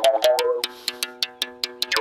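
Mougongo mouth bow played by striking its string with a stick: quick, even taps with a melody of overtones shaped in the player's mouth. About half a second in the taps thin out and the tones ring on more quietly, then quick taps return near the end.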